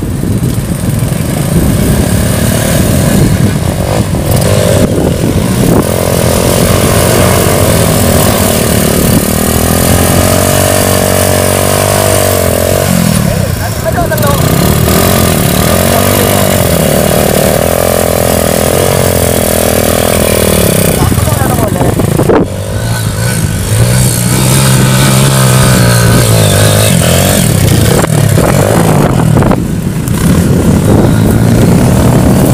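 Trail motorcycle engines revving hard on a steep muddy hill climb, the pitch rising and falling repeatedly as the riders work the throttle, with a short drop in sound about two-thirds of the way through.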